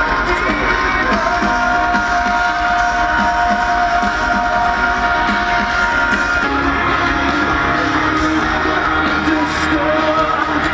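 A live rock band playing through a large outdoor festival PA, heard from within the crowd: long held guitar notes over a steady drum beat.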